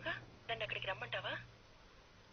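Speech only: a short spoken phrase about half a second in, then a low background.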